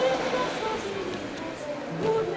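A faint voice without clear words.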